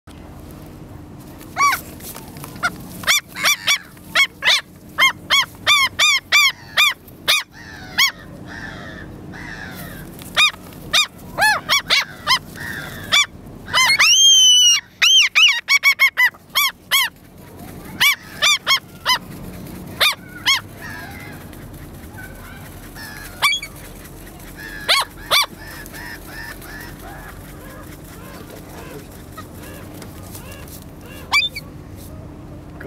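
Common gulls calling at close range: a run of short, high, arched calls, several a second at the busiest, with one longer, louder rising call about halfway through. The calls thin out over the second half.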